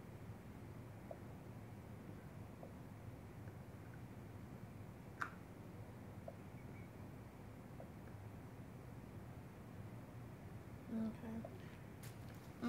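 Quiet room tone with a steady low hum, a few faint ticks and one sharp click about five seconds in, then a brief voice sound shortly before the end.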